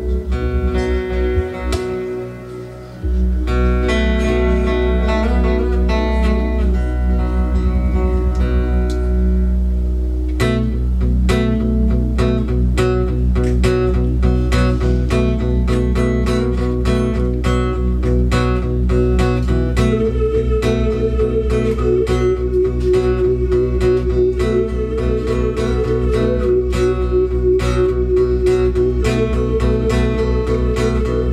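Instrumental opening of a live song on acoustic guitar and keyboard: held chords at first, then about ten seconds in the guitar settles into a steady rhythmic strum over a continuous deep bass.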